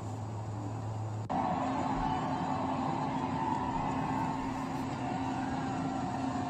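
Street noise with idling vehicles, recorded on a phone, under a steady low hum. About a second in it cuts abruptly to a louder stretch of vehicle noise with a steadier, higher hum.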